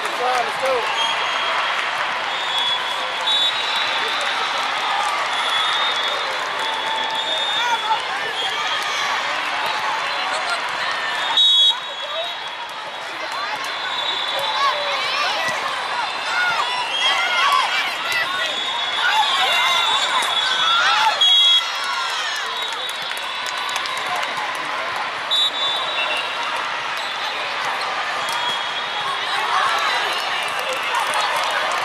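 Din of a busy multi-court volleyball hall: many voices chattering and calling out, with sneakers squeaking on the sport-court floor and volleyballs bouncing and being struck. Two sudden loud jolts stand out, about a third of the way in and again about two-thirds in.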